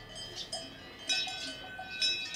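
Cowbells clanking at irregular intervals, several bells heard together. One rings out more loudly from about a second in.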